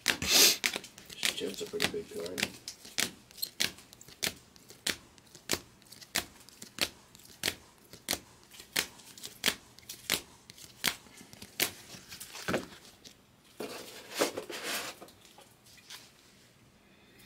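Trading cards in rigid plastic holders being moved one at a time from the front to the back of a stack, each move giving a sharp plastic click, a little under two clicks a second. There is a stretch of rustling and sliding at the start and another shortly before the end.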